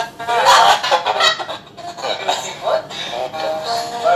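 High, excited voices and laughter over background music.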